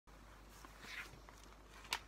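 A magazine being picked up and handled: a soft paper swish about halfway through and a sharp crackle near the end.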